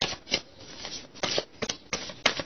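A deck of tarot cards being shuffled by hand: a series of short, uneven rasps of cards sliding against each other.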